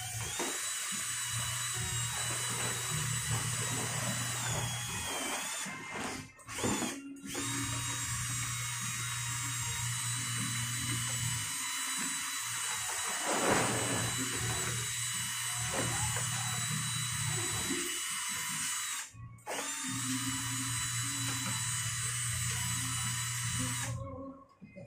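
Cordless drill with a mixing paddle running steadily, stirring a thick cement-based leak-plug mix in a small plastic pail, with a high motor whine. It stops briefly twice around six and seven seconds in and once more near nineteen seconds, then cuts off at the end.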